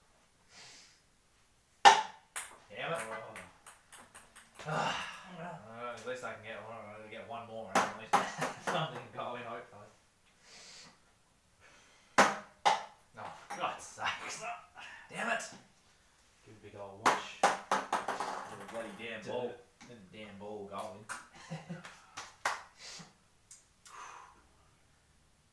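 Ping-pong balls bouncing off a beer-pong table and plastic cups: a series of sharp clicks, the loudest about two seconds in and another cluster about twelve seconds in.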